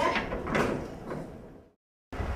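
Metal bar gate being shut, with one loud clatter about half a second in; then the sound fades out to silence.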